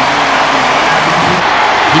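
Large stadium crowd cheering loudly after a long gain on a run, a dense wash of many voices with no single voice standing out.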